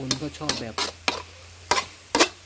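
A metal ladle scrapes and knocks against a steel wok as stir-fried rice noodles are tossed, with the food sizzling underneath. There are about five sharp scrapes, the loudest near the end.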